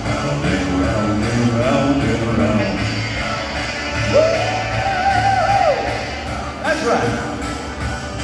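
A man singing an upbeat rock-and-roll style song into a microphone over recorded backing music played through a PA speaker, holding one long note about four seconds in.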